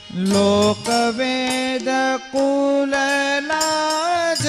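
Harmonium playing a melodic interlude of held notes that step up and down in pitch, with tabla strokes beneath, in devotional kirtan music.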